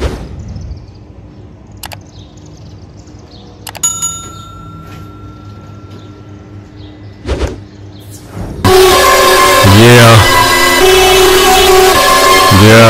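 Subscribe-button animation sound effects: a whoosh, a click, and a bell-like ding that rings for a couple of seconds, then a second whoosh. About two-thirds of the way in, a loud hip-hop track with a heavy bass beat cuts in suddenly and is the loudest sound.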